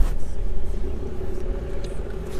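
Volkswagen car engine running with a low steady rumble, heard from inside the cabin as the car moves off slowly, with a sharp click at the very start.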